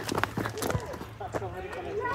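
Fowl in an aviary calling, likely turkeys: short clicking calls in the first second, then quieter wavering calls.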